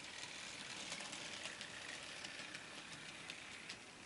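Kumata brass N scale model of a Milwaukee Road EP-2 Bipolar electric locomotive, freshly repaired, running along the track. A faint high whirr of its motor and gearing comes with quick irregular clicks from the wheels on the rails, getting slightly quieter near the end.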